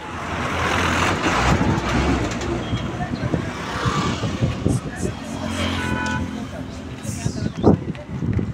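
Road traffic close by: a vehicle passes in the first few seconds, and a horn sounds briefly about six seconds in, over the scattered clop of bullocks' hooves on the asphalt.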